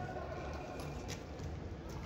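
Quiet outdoor background noise: a steady low rumble with a couple of faint clicks.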